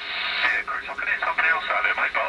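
Another station's voice coming in on upper sideband through a CRT Superstar 6900 CB radio's speaker: thin, tinny speech with no bass or top end.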